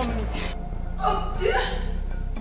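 A woman crying: a breathy sobbing gasp, then a short broken "ah" cry about a second in, falling in pitch.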